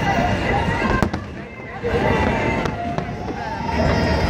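Fireworks going off over people's voices, with one sharp crack about a second in.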